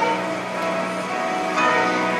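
Background keyboard music: sustained chords held steadily, with a new, brighter chord coming in near the end.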